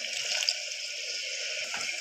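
Water poured from a bowl into hot oil and masala paste in a pressure cooker, giving a steady sizzling hiss.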